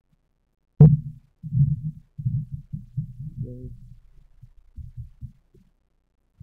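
A series of dull low thuds and bumps from someone walking up to the lectern and settling at it, picked up through the sound system. It starts with one sharp knock, the loudest, less than a second in, then goes on irregularly at about two a second and fades out after about four seconds.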